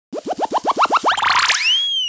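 Cartoon-style sound effect: about a dozen short rising boing chirps that come faster and climb in pitch, ending in one long upward glide.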